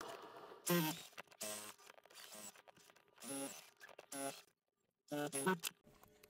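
A man's voice, quiet, in a handful of short separate bursts, beginning with a laugh.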